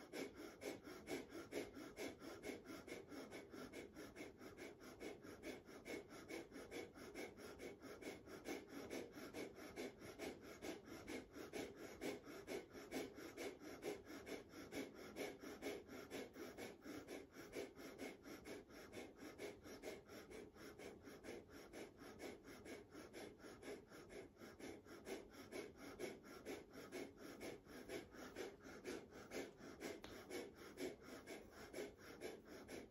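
Faint breath of fire: rapid, evenly paced forced breaths through the nose, each exhale pumped by pulling the belly button in toward the spine, kept up without a break.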